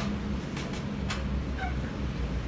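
Steady low hum of room noise with a few light clicks, and a short high squeak about three quarters of the way through.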